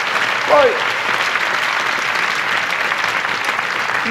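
A theatre audience applauding steadily, an even crackle of many hands clapping, with one man's word spoken over it about half a second in.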